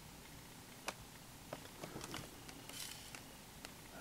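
Faint clicks and crinkles of a clear plastic blister pack being handled, a few scattered small ticks over a low room hiss.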